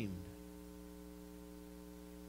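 Steady electrical mains hum, a low buzz made of several even tones held without change.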